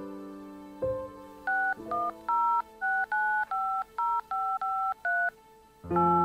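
Touch-tone (DTMF) keypad beeps of a mobile phone as a number is dialled: about ten quick two-tone beeps in a row, over a few soft piano notes.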